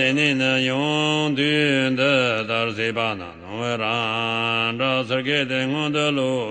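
A lama chanting a Tibetan Buddhist tantra: a single low male voice reciting in a steady, near-level chant. There is a brief dip about halfway as the line ends and resumes.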